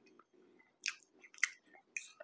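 A person chewing a mouthful of food with the mouth closed, faint, with two short wet mouth smacks about a second in and half a second later.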